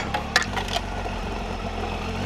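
Triumph Tiger 800XCx's three-cylinder engine running steadily at low speed on a gravel road. A few short clicks and scrapes come in the first second.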